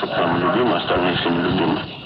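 Speech from an old radio interview recording, with a narrow, muffled sound.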